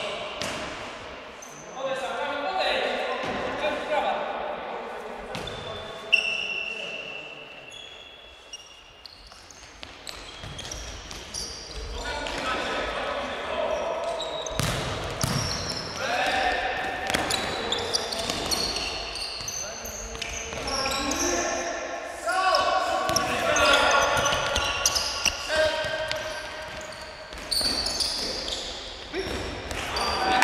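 Indoor futsal game in a reverberant sports hall: players' voices calling out across the court, with sharp thuds of the ball being kicked and bouncing on the hard floor, one loud strike about six seconds in.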